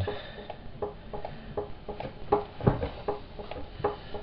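A string of light clicks and taps, uneven but about four a second, each with a brief ring; the loudest knock comes a little before three seconds in.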